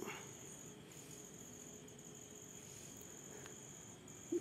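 Near silence: quiet room tone with a faint, steady high-pitched whine that drops out briefly about a second in.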